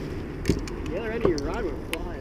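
A voice saying a few indistinct words over a steady low rumble, with two sharp clicks, one about half a second in and one near the end.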